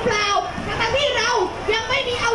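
A woman speaking loudly into a microphone at a street rally, her voice carried through truck-mounted loudspeakers to the crowd. It is one continuous, high-pitched, raised voice.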